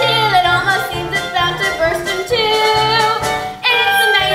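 Young voices singing a musical-theatre song over instrumental accompaniment, with some long held notes.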